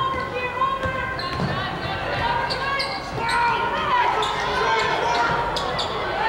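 A basketball being dribbled on a hardwood court, its bounces thudding in the first second or so, while sneakers squeak repeatedly on the floor as players cut and set up.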